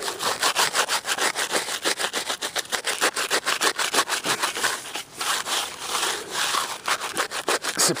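Snow being brushed off a plaque on a boulder by hand: quick rubbing strokes, about six a second, with a short pause about five seconds in.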